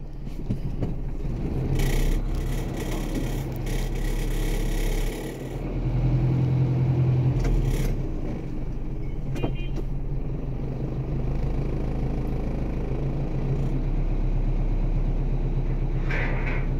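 Motor vehicle engines running close by: a steady low rumble with an engine hum that swells about two seconds in and again around six to eight seconds in, as traffic moves past.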